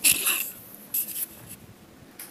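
Two short scratchy rubbing noises about a second apart, with no pitch to them.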